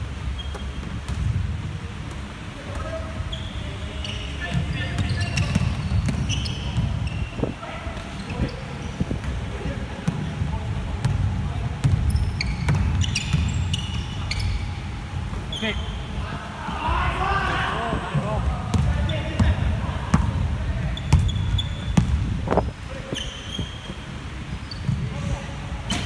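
Basketball game on a wooden hall floor: the ball bouncing repeatedly, sneakers squeaking in short high chirps, and players calling out indistinctly, all echoing in the large hall.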